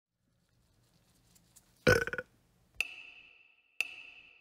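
Logo-intro sound effects: a short, loud rasping burst about two seconds in, then two ringing pings a second apart, each fading away.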